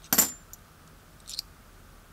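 Half-dollar coins clinking as they are sorted by hand and set down on a pile of coins: a sharp clink with a brief metallic ring just after the start, a faint tick, then a lighter clink about a second and a half in.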